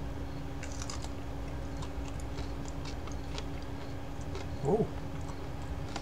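A man chewing a small raw Mexican chili pepper, with faint crunching clicks as he bites it down, over a steady low hum. A short "oh" is voiced a little before the end.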